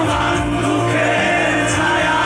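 Live band music with sung vocals, loud and steady, heard from among the audience at a large concert.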